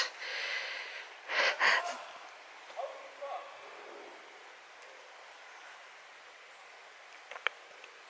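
A short, sharp breath or sniff close to the microphone about a second and a half in, then a few faint, distant voices, over a steady soft hiss.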